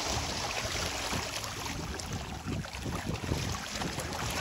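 Wind buffeting the microphone, with small waves lapping at the water's edge.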